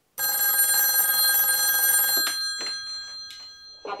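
Corded desk telephone ringing: one ring of about two seconds, made of many steady high tones, that dies away over the next second. A few short clicks follow.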